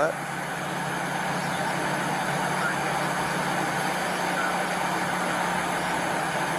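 Steady hum and noise of an idling vehicle as picked up by a police body camera, with a low drone that cuts off near the end.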